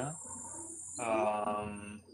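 A person's voice holding a drawn-out hesitation sound, a steady "uhh" of about a second that starts midway after a short hush.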